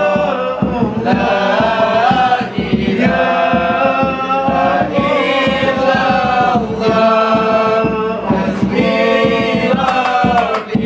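A male group sings a Malay selawat devotional chant in unison, with long held notes, led by one voice on a microphone. Hand-struck kompang frame drums beat underneath.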